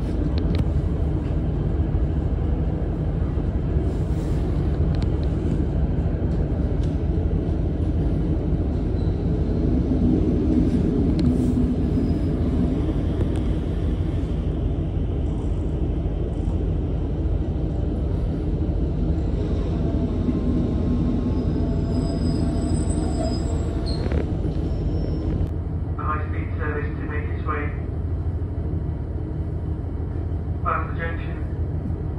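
Steady low rumble inside a Great Western Railway diesel multiple unit carriage: the train's engine and running noise drone on throughout, a little louder for a few seconds around the middle.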